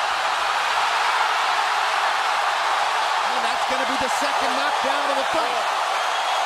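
Large arena crowd cheering in a steady, sustained roar as a boxer is knocked down. A man's voice is heard briefly over the crowd about halfway through.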